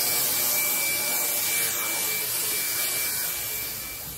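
Dyson cordless stick vacuum running over carpet: a steady whooshing hiss with a thin, steady high whine, easing off slightly near the end.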